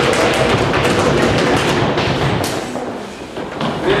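Audience clapping, many hands at once, dying away about three seconds in.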